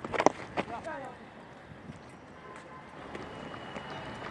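A sharp crack about a quarter second in as a cricket bat strikes the ball, followed by faint, steady open-ground ambience.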